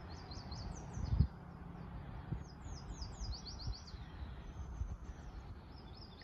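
Small songbird singing in quick runs of short, falling high chirps, over a steady low rumble. A single dull thump about a second in is the loudest sound.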